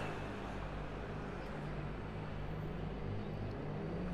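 Steady low hum of city street background noise, with no single event standing out.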